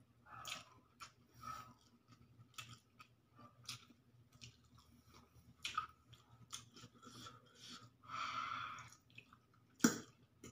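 A person chewing a mouthful of pancit canton noodles close to the microphone, with small irregular mouth sounds, a longer rustling noise about eight seconds in, and a sharp click of the fork against the plate near the end.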